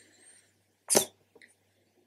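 A single short cough about a second in, otherwise near silence.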